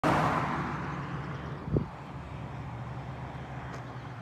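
A car going by on the road, its noise loudest at the start and fading away over the first second and a half, over a steady low engine hum. A single short thump just before two seconds in.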